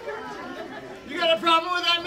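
Voices chattering in a large room. About a second in, one voice rings out in a loud, steady call held for most of a second.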